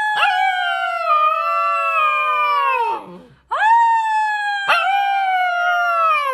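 Husky puppy howling: two long howls, the first ending about three seconds in and the second starting half a second later. Each holds a fairly high pitch with a brief catch near its start, then slides down as it fades.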